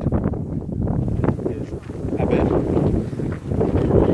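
Wind buffeting the phone's microphone: a loud low rumble that rises and falls with the gusts.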